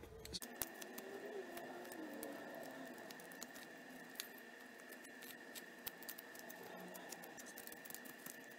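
Flexcut detail knife paring soft basswood: faint scratchy slicing with many small clicks as thin shavings are cut away while rounding out the carving.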